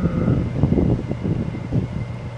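Clip-on microphone rustling against clothing: an irregular crackle over a steady low hum.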